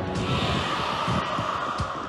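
Fireworks bursting: a quick, irregular run of dull low booms under a steady hiss.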